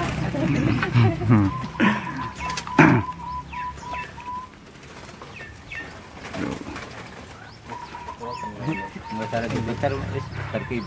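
Zebra doves (perkutut) cooing in a breeding aviary: two runs of short, even notes at one steady pitch, the first about a second and a half in and the second near the end. Smaller birds chirp in between, and there is a single loud knock about three seconds in.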